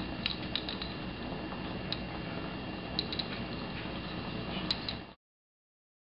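Metal tongs clinking copper pennies against each other and the glass beaker as they are spread around in boiling sodium hydroxide solution: a scattering of sharp clicks over a steady background hiss. The sound cuts off suddenly about five seconds in.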